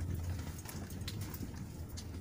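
Engine of a moving road vehicle running steadily with a low hum, with irregular light clicks and rattles over it.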